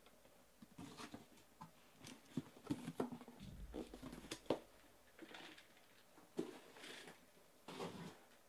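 Shrink-wrapped cardboard card boxes and their cardboard shipping case being handled and stacked: a run of light knocks, scrapes and plastic rustles, with a dull thump about three and a half seconds in.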